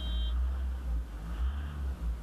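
Low, steady engine rumble of the Isuzu D-Max V-Cross's diesel, heard from inside the cab as the pickup creeps forward. A short, high electronic beep sounds right at the start.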